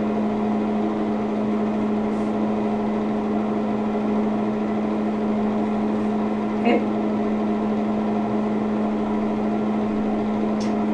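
A steady low hum, like a fan or motor running, with one strong low tone and fainter tones above it. A brief short noise stands out about two-thirds of the way in.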